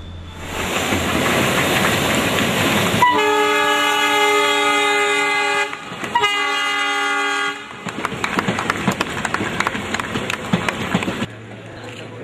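Indian Railways passenger train running past close by. There are two long blasts of its horn, the first from about three seconds in and a shorter one just after, then the clatter of wheels over rail joints until near the end.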